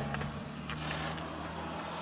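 A vehicle engine running at idle, a steady low hum, with a few light clicks about a quarter second in.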